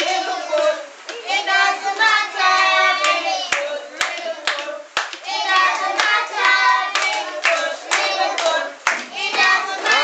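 A class of young children singing together in a small room, with hand claps about once a second.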